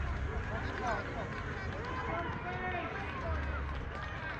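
Distant voices of players and spectators calling and chattering across a baseball field, several overlapping shouts, over a steady low background rumble.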